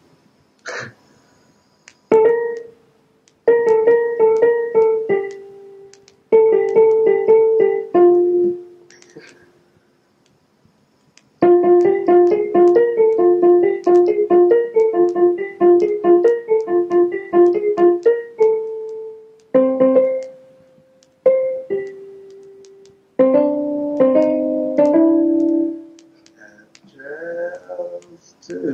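A keyboard with a piano sound played in short, halting phrases of repeated notes and chords, stopping and starting with gaps between them; the longest run lasts about six seconds midway through.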